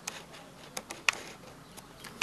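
A handful of faint, irregular clicks and ticks from handling the freshly stripped laptop charger cable, over quiet room tone.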